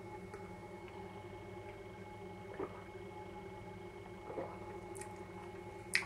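Quiet room tone with a faint steady electrical hum, broken by two soft brief sounds about two and a half and four and a half seconds in.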